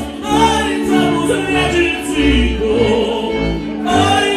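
A live Polish highland (góral) folk string band playing, with violins and a double bass, and voices singing over it.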